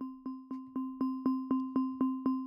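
A software instrument in Ableton Live plays the same note over and over in a steady, even rhythm of about four notes a second. Each note has a sharp attack and fades before the next one. The even spacing comes from the Phase Pattern generator set to a straight line, which places eight equal notes across the bar.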